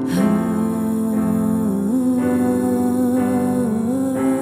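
A woman's voice holding long wordless notes over sustained chords on a Korg electric piano, the sung line stepping up in pitch about two seconds in.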